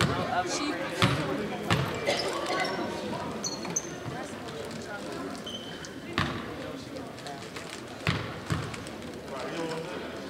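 Basketball bouncing on a hardwood gym floor: a handful of single, spread-out bounces, as at the free-throw line, over the murmur of voices in the gym.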